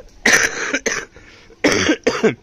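A person coughing: a harsh cough with a short one right after it about a quarter second in, and another near the end.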